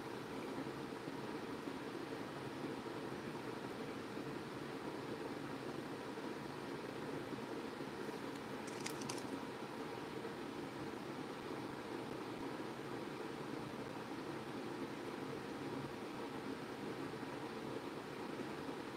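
Steady background hiss of room noise, with one brief faint click about nine seconds in.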